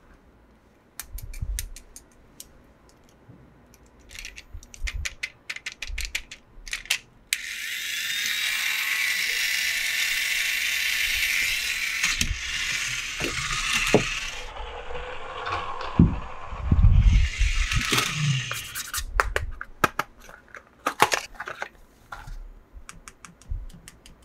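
Small plastic toys clicking and tapping as they are handled, then a toy race car's gear motor whirring steadily for about six seconds as it is rolled on the carpet, followed by a few knocks and more clicks.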